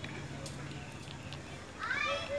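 Low-level background with a faint steady hum, then a short high-pitched call near the end whose pitch rises.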